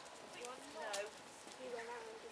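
Ridden horse's hooves clip-clopping at a walk, with a voice speaking over them.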